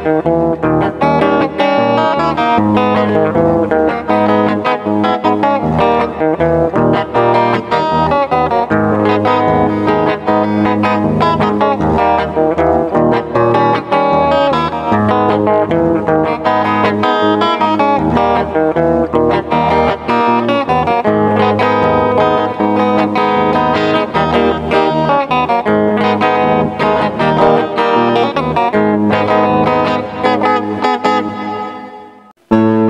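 Electric guitar played fingerstyle: a melody picked over chords and a bass line, running on continuously as part of an instrumental medley.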